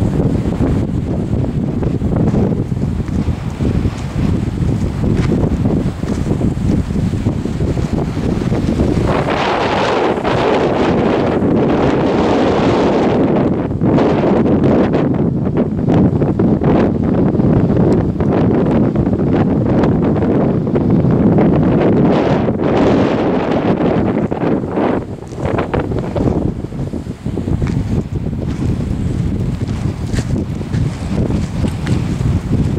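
Strong wind buffeting the microphone: a loud, rumbling gust noise that grows stronger about a third of the way in and eases for a moment near the end.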